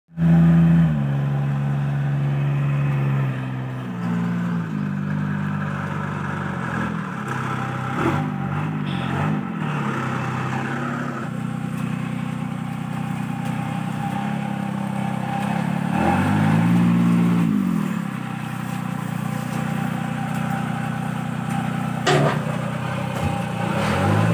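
Small plantation mini tractor's engine running, its pitch shifting up and down several times as it is revved and eased off, one clear rise and fall about two-thirds through. A few sharp knocks stand out over it, one loud near the end.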